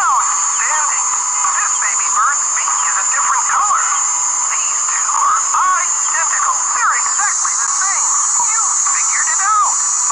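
A narrator speaking, heard thin and tinny with little low end, over a steady high whine.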